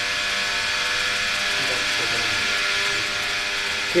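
A steady buzzing hum with hiss, even in level throughout, with a faint murmur of a voice about two seconds in.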